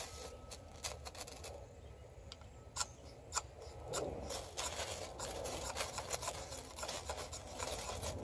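Ferrocerium rod scraped with the sharp 90-degree spine of a PKS Kephart XL carbon-steel knife, striking sparks onto tinder. A few scattered scrapes at first, then a quicker, denser run of scraping strokes from about halfway through.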